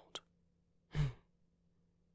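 A man's short, breathy sigh about a second in, preceded by a soft mouth click just after his last word.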